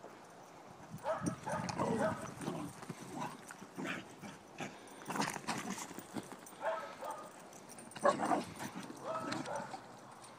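Working cattle and stock dogs: animal calls in bursts about a second in, again near seven seconds and from eight to nine and a half seconds, with hoof thuds and knocks in between.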